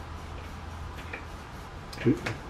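Quiet room tone: a steady low hum, with a couple of faint light ticks about a second in and near the end.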